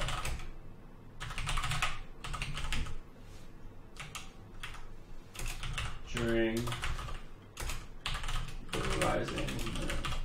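Typing on a computer keyboard: runs of quick keystrokes with short pauses between them.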